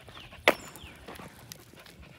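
Footsteps on asphalt during heel walking, with one sharp click about half a second in and faint high chirps falling in pitch.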